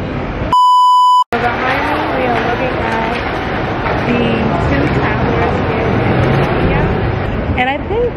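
A loud steady bleep tone, under a second long, cuts in about half a second in and silences everything else, an edited-in bleep masking the sound track. After it, many voices talk at once over a busy street's hubbub.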